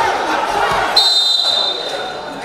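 A referee's whistle blown once, a steady shrill blast of about a second and a half starting halfway in, stopping the wrestling action. Crowd chatter and shouts fill the hall around it.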